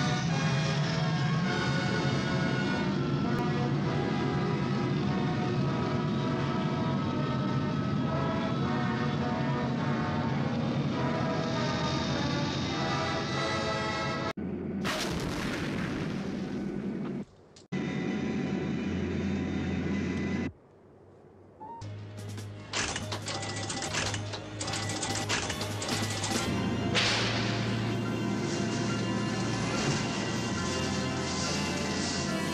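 Movie soundtrack audio: orchestral-style music for about the first half. Then come film sound effects: a noisy stretch broken by two short drop-outs, followed by a run of sharp bangs in the second half.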